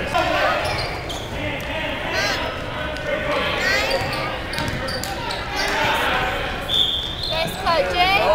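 Basketball dribbled on a gym floor during youth game play, with spectators talking and calling out in a large gym.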